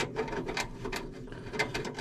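Screwdriver backing out a screw that holds the heater assembly in the sheet-metal housing of a NuTone 765H110L bathroom heater fan: a run of small, irregular metallic clicks, several a second.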